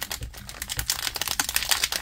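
Plastic wrapper of a Panini Contenders 22-card value pack crinkling and clicking as fingers grip and work it open, a quick run of small sharp crackles.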